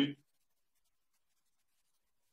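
A man's voice finishing a phrase at the very start, then near silence.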